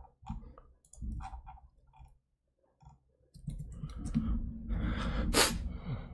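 A few scattered computer keyboard and mouse clicks, then a pause. Over the last couple of seconds comes a longer rough noise that swells, with one sharp burst near the end.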